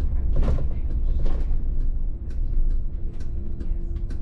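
VDL city bus running slowly over brick paving, heard from the driver's cab: a steady low rumble with many short creaks and rattles from the cab fittings. A steady hum comes in during the second half.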